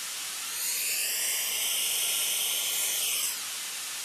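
Steady noise like white noise from a studio loudspeaker, picked up by a microphone. From about half a second in until near the end, comb-filter notches sweep down and back up through it, a slightly louder sweeping whoosh. It is an acoustically caused comb filter: the time delay of a sound reflection is mixed with the direct sound.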